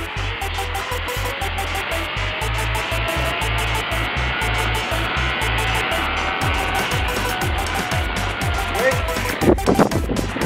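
Zipline trolley pulleys running along a steel cable, with a whine that slowly rises in pitch as the rider gathers speed, and wind buffeting the microphone. A loud burst comes near the end.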